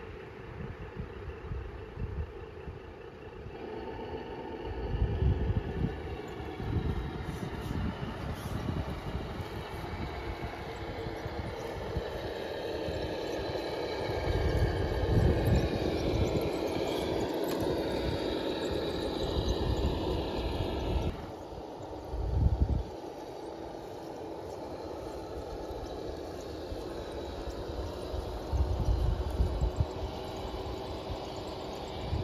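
Traxxas TRX6 six-wheel RC truck's electric motor and drivetrain whining as it drives, with bursts of low rumble now and then. The whine stops suddenly about two-thirds of the way through.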